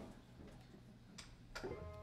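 Near silence: faint room tone with two soft clicks in the second half and a faint held tone just before the end.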